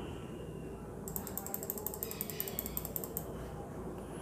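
A faint, rapid run of small ratchet-like clicks, about a dozen a second, starting about a second in and lasting some two seconds, over low room noise.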